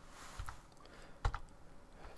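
A few faint clicks from computer controls as a document is paged forward: a soft click about half a second in, then a sharper pair of clicks a little past one second.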